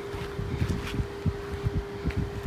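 Wind buffeting the microphone in irregular low gusts, over a steady single-pitched hum from machinery running in the yard.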